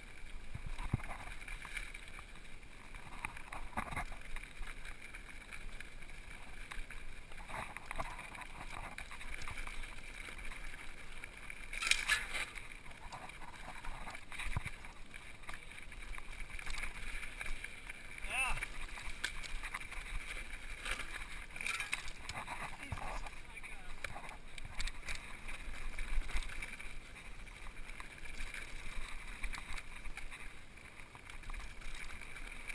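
Mountain bike rolling down a rocky dirt trail: tyres crunching over rock and gravel and the bike rattling, with frequent knocks over the bumps, the sharpest about twelve seconds in.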